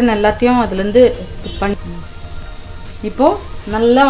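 Mutton frying in onion masala in a pan, a steady sizzle, stirred with a wooden spatula. A voice talks over it in the first second and a half and again near the end.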